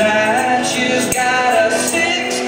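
Live band music: a man singing over strummed acoustic guitar and electric guitar, with light percussion ticking in a steady beat.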